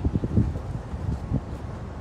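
Wind buffeting the microphone in uneven low gusts, strongest just at the start.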